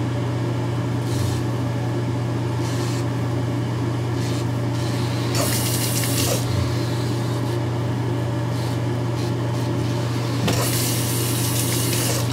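Battery-powered Gillette Fusion5 Power razor's vibration motor buzzing steadily as it is drawn over the face. Two bursts of running water come about five and a half and ten and a half seconds in, as the blade is rinsed under the tap.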